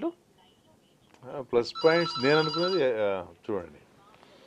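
An electronic telephone ring, a pulsing trill lasting about a second, sounding about two seconds in over a man's voice.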